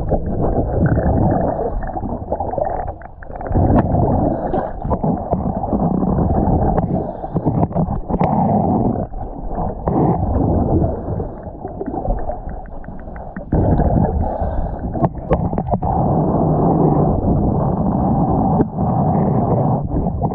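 Underwater sound of a diver's exhaled breath bubbling out of the regulator: a muffled gurgling rumble in long stretches, broken by short quieter pauses for the inhale.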